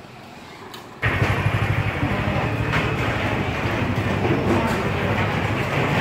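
Quiet street ambience, then about a second in a loud motor-vehicle engine running close by with a steady low rumble, over street traffic.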